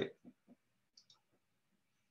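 Near silence in a pause in speech: the last of a spoken word at the very start, then a few faint short clicks, the clearest about a second in.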